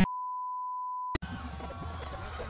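A steady 1 kHz reference test tone, the kind that runs with colour bars, lasting about a second and cut off with a click. Faint background noise follows.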